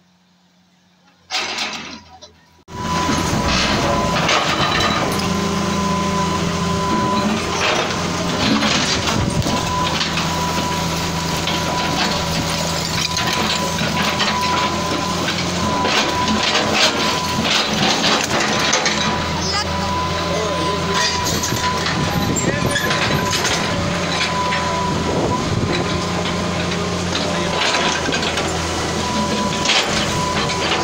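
Hydraulic excavator engine running steadily while its bucket breaks down a block-and-plaster wall, with repeated knocks, crunches and the clatter of falling masonry. Voices of a crowd of onlookers are mixed in.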